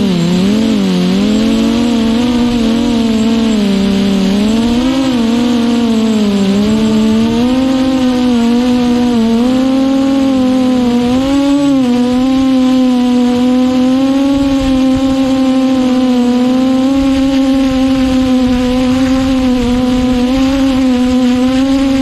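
Quadcopter's brushless motors and propellers whining in flight. The pitch wavers up and down with throttle changes through the first half, then holds steadier.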